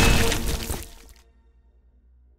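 The tail of a loud crashing, shattering impact sound effect, a cartoon body being smashed with a big spatula, dying away over about the first second and leaving near silence.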